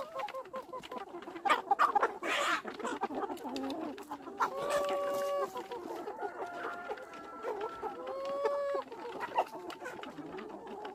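A large flock of free-range chickens clucking and calling, with two long drawn-out calls, one about halfway through and one near the end.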